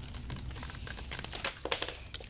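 Brittle leaves and tape crinkling and crackling in the hands as they are handled and stuck together, a quick run of small crackles that gets louder near the end. The leaves keep crumbling as they are worked.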